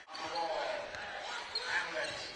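A basketball being dribbled on an indoor court, under the murmur of a crowd in a large hall.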